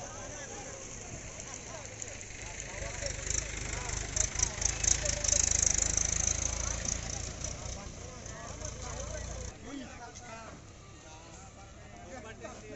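Street sound recorded on a phone: faint voices of several people talking, under a low rumble and hiss that swells in the middle and cuts off suddenly a couple of seconds before the end.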